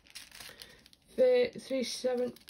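Small plastic zip-lock bags of square diamond-painting drills crinkling as they are picked up and handled, with a short spoken phrase about a second in.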